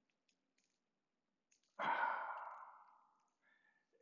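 A man's breathy sigh about two seconds in, lasting under a second and tapering off, with a few faint clicks before it.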